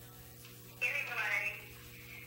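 Indistinct, thin-sounding speech, a short phrase about a second in, over a steady electrical hum.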